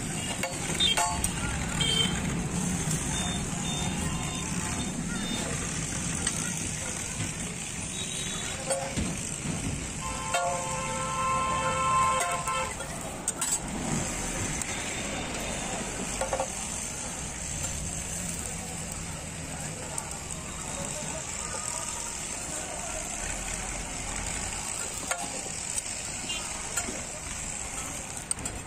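Oil sizzling steadily on a large flat iron griddle (tawa) as parathas fry, with the metal ladle and spatula clicking and scraping on the iron now and then. About ten seconds in, a held pitched tone sounds for about three seconds over the street background.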